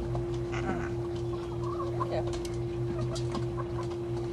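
A flock of hens clucking with short, scattered calls while they feed, with light clicks from pecking, over a steady low hum.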